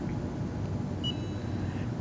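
Low, steady room hum with a short, faint high-pitched beep about a second in.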